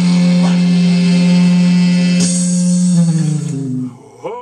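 Electric guitar playing blues: one long held note that slides down in pitch and fades out near the end.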